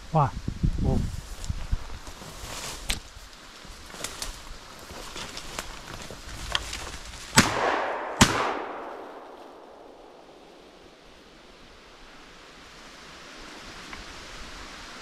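Two shotgun shots less than a second apart, about halfway through, fired at a flushing grouse; each shot rings out and dies away.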